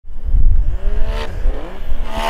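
Stage 2 turbocharged Yamaha Sidewinder snowmobile's three-cylinder four-stroke engine revving hard, its pitch climbing, dipping about halfway through and climbing again as the sled is held up in a wheelie.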